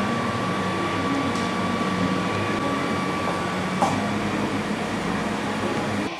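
Steady room hum from a running machine, with a thin high whine that stops a little past halfway.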